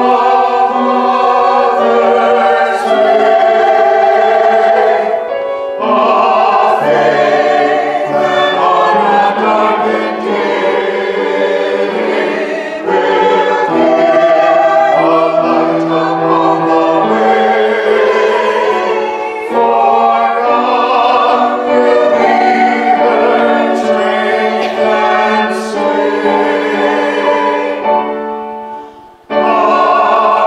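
Mixed choir of men's and women's voices singing a hymn-style anthem in harmony, in held phrases with brief breaks between them.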